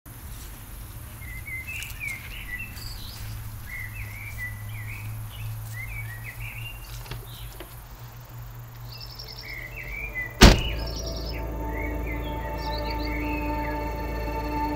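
Songbirds chirping and trilling over a low outdoor rumble. About ten seconds in comes a single loud thunk, a car door shutting, followed by a steady low hum with a few held tones.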